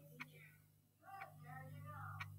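Faint ticking of a mechanical dial countdown timer, one tick about every second, twice here, over a low steady hum.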